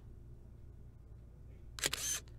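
A camera shutter click near the end, over a faint low hum: the rear photo of the car being taken.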